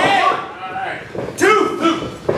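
Onlookers shouting and talking, with a single sharp slap about one and a half seconds in as one wrestler strikes another in the ring corner.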